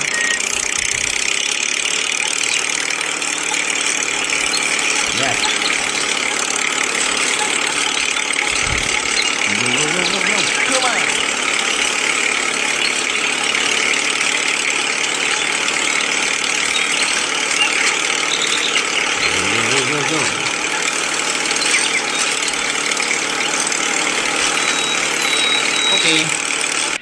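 Small motor of a miniature model tractor running steadily with a continuous mechanical whine. Now and then it rises briefly in pitch as it speeds up.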